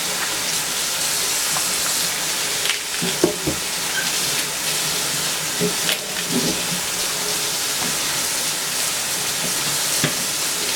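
Steady sizzle of food frying in a pan, with a few light knocks around three seconds in and again around six seconds in as celery stalks are set down on a plastic cutting board.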